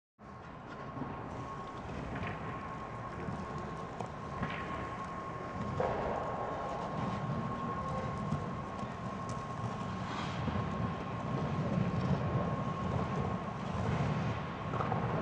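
Hockey skate blades scraping and gliding on rink ice as the skates are pushed out on their inside edges and pulled back together, a continuous rumbling scrape that grows louder about six seconds in. A steady tone, likely from rink machinery, runs under it.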